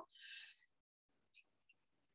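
Near silence, with one faint, brief high sound in the first half second.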